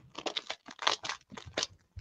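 A strand of small plastic bags of diamond-painting drills crinkling as it is handled, in an uneven run of crackles that are loudest about a second in.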